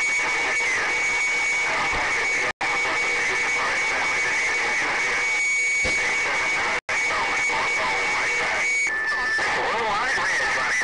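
CB radio receiving long-distance skip: several distant stations talking over one another at once, garbled and unintelligible, with a steady high heterodyne whistle on top that drops to a lower pitch near the end. The sound cuts out completely twice, very briefly.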